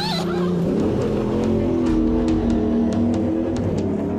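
A race car engine running at a steady pitch that sags slightly, mixed with background music that has light regular ticks.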